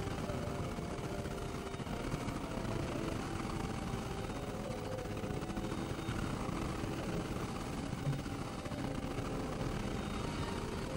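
Experimental electronic noise music of layered synthesizer drones: a dense, steady noise weighted to the low end, with faint held tones drifting in and out above it.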